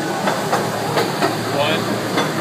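Small amusement-park train rolling along its track: a steady running noise with a few faint clicks.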